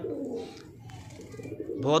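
Lal Gandedaar domestic pigeons cooing, low and soft.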